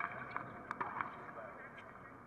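A tennis ball being bounced on a hard court before a serve: several short, sharp taps, unevenly spaced, over a steady outdoor hum of faint voices.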